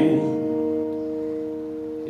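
An acoustic guitar chord, strummed once and left to ring, its notes sustaining and slowly fading.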